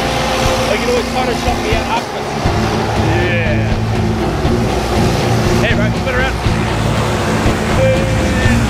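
Background music with a steady bass line and a singing voice.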